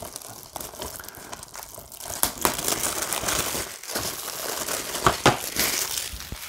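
Plastic shrink-wrap being peeled and torn off a DVD case, crinkling irregularly, with sharper crackles from about two seconds in.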